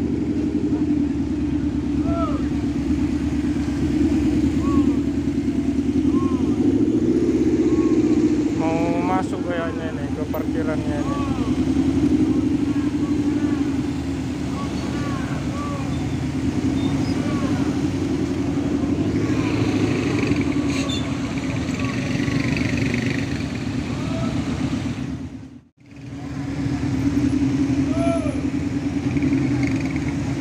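Tri-axle coach bus's diesel engine fitted with a racing exhaust, running with a deep, steady rumble as the bus manoeuvres slowly. The sound drops out briefly about 26 seconds in.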